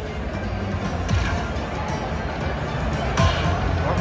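Lightning Link slot machine playing its bonus-round music and sound effects as the reels spin during free spins, with two low falling thuds a couple of seconds apart, over a steady background din.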